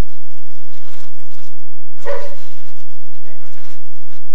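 A dog gives a single short bark about two seconds in.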